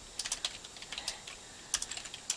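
Computer keyboard being typed on: a quick run of keystrokes in the first second, a short pause, then a few more keystrokes near the end.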